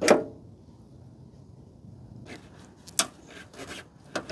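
Clicks and light taps of small metal and plastic parts being worked by hand as a C-clip is taken off a car's fuel door lock bracket. One sharp click at the start, then a quiet stretch, then a scatter of lighter clicks in the last two seconds.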